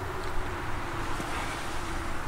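Steady background noise: a low rumble with hiss and a faint steady hum, with no distinct events.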